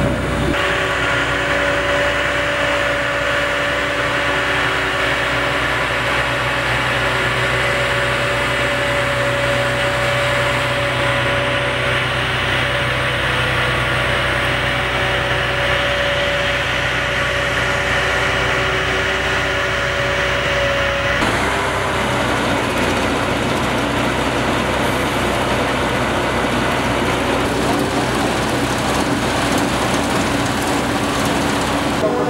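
Grimme potato harvesters running in the field: a steady engine and machinery drone with a held whine over it. The sound changes at a cut about two thirds of the way through.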